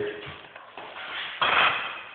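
A plastic bag of empty drink cans being handled and set down, with one short rustle about a second and a half in.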